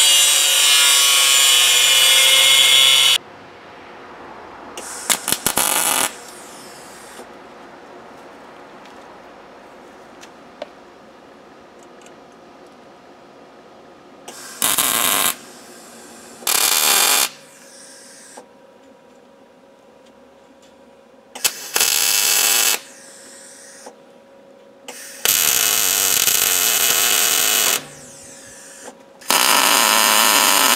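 Angle grinder running against steel for about three seconds, then stopping. Then a few short bursts of wire-feed welding, each about one to two seconds long with one longer run near the end, as a steel frame is tacked together.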